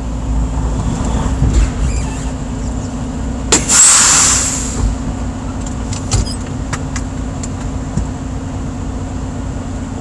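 Truck engine idling steadily, heard inside the cab, with a loud burst of compressed-air hiss about three and a half seconds in that lasts about a second.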